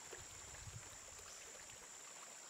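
Faint outdoor woodland ambience: a low hiss with a thin steady high-pitched tone and a few soft low rumbles in the first second.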